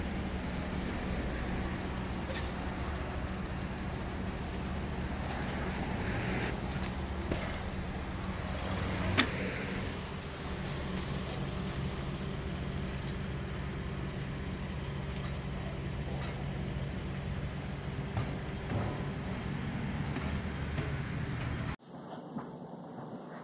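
Steady low hum of a vehicle engine running on the street, with scattered knocks and one sharp clank about nine seconds in as a tank water heater is handled off a minivan roof rack. The sound cuts off abruptly just before the end.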